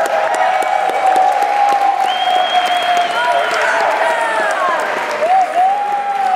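Audience applauding and cheering, with loud whoops and shouts over the clapping.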